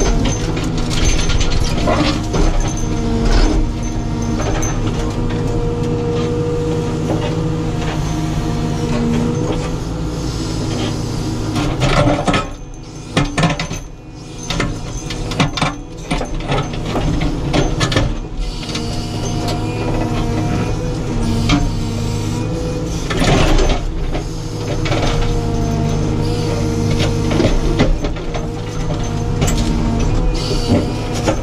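Caterpillar 432F2 backhoe loader's diesel engine and hydraulics, heard from inside the cab, working under load as the backhoe arm digs around a stone, with a hydraulic whine rising and falling and occasional knocks from the bucket. The engine eases off briefly about halfway through.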